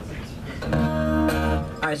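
A chord strummed on an acoustic guitar about two-thirds of a second in, struck again midway and ringing for about a second before it stops.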